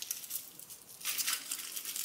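Foil wrapper of a small chocolate Easter egg crinkling softly as it is squashed in a hand, the crackles coming mostly in the second half.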